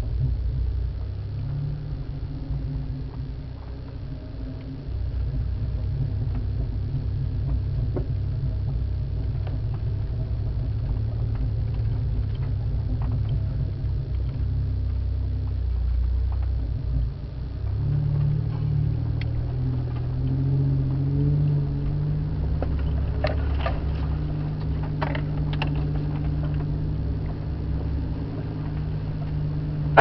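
4x4's engine running at low revs as the vehicle crawls along a rough dirt track. Its note changes and runs a little higher a little over halfway through, and a few sharp knocks come near the end.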